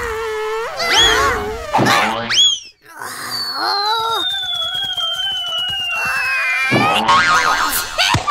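Cartoon sound effects: short rising yelps from the characters, then a long falling whistle of something dropping from above, with a wavering wail beneath it, ending in a noisy crash near the end.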